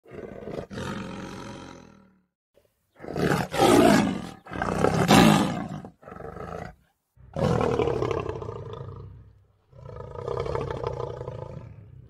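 Lion roaring: about six separate calls of one to two seconds each with short pauses between, the loudest a pair about three to five seconds in.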